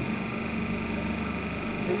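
Double-die paper plate making machine running steadily with a hum and a thin, high whine, no press strokes.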